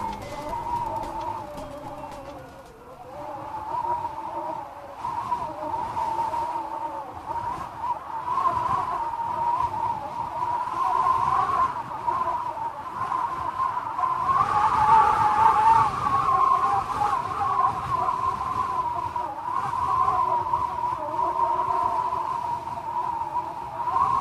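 Closing-credits sound design: a sustained, wavering tone held near one pitch, with fainter steady tones layered beneath it, swelling louder around the middle.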